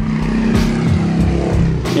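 An engine running with a steady low hum, and a short knock near the end.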